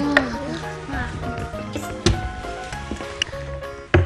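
Background music with sustained held notes, and a brief voiced 'ah' just after the start.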